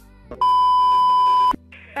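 A single steady high-pitched beep, about a second long, starting about half a second in and cutting off suddenly. It is an edited-in censor bleep over the phone call.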